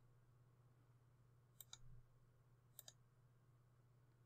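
Near silence with faint computer mouse clicks: a quick double click about a second and a half in and another near three seconds.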